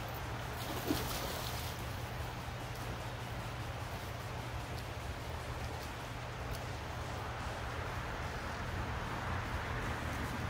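Shallow river flowing steadily past the bank, a broad even rush of water. There is a single short knock about a second in.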